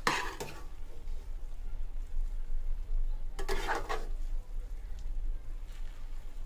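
Slotted steel spatula stirring cooked biryani rice in a stainless steel pot, with two short scraping bursts, one at the start and one about three and a half seconds in, over a low steady hum.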